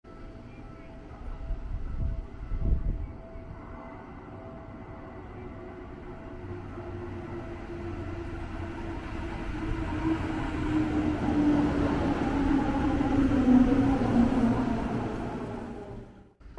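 Seibu electric commuter train arriving at a station platform, growing steadily louder as it approaches, with a whine that falls in pitch as it slows to a stop. A couple of low thumps come about two to three seconds in.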